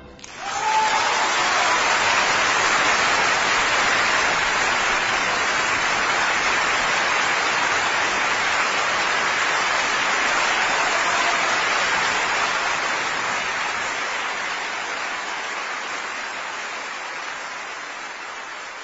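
Concert audience applauding at the end of the performance, a dense, steady clapping that begins at once and slowly fades over the last several seconds.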